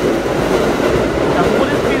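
Red-and-cream Keikyu electric train running fast past a station platform, picking up speed as its cars go by. Its wheel and motor noise is loud and steady.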